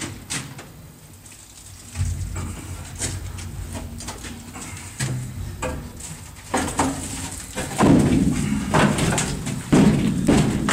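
Irregular clanks and scrapes of thin sheet metal being pulled and ripped at by hand on a locked door, a string of sudden knocks with a low rumble underneath from about two seconds in.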